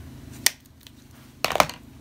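Plastic makeup packaging handled: a single sharp click about half a second in, then a quick run of clicks and knocks about a second and a half in, as an eyeshadow quad palette is closed and set down on a plastic tray among other makeup.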